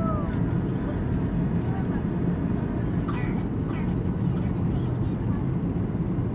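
Steady cabin noise of a Boeing 737-800 in flight, heard from a window seat: a constant low rumble of its CFM56 jet engines and the air rushing past the fuselage, with faint voices over it.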